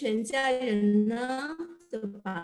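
A woman singing a short melodic phrase with long held notes, one drawn out for about a second, then a brief break near the end.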